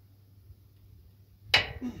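Quiet at first, then near the end a sudden loud, forceful exhale followed by a short grunt as a strongman drives a wooden log overhead in a log press.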